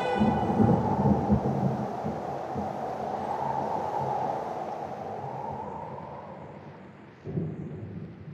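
Rolling thunder: a loud crackling rumble that slowly fades over several seconds, with a second rumble starting near the end.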